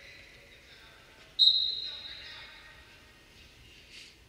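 A referee's whistle blown once, a shrill single tone coming in sharply about a second and a half in and trailing off over about a second in the hall. It is the signal to start wrestling from referee's position, over low arena background noise.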